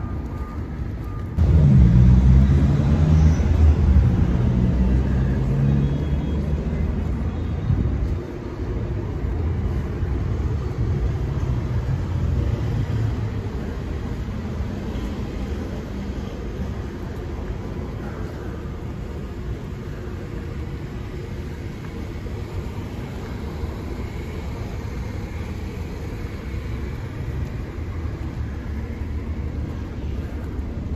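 Street traffic: a close vehicle engine runs loud with a low hum from about a second and a half in, eases off around eight seconds, then gives way to a steady low rumble of passing traffic.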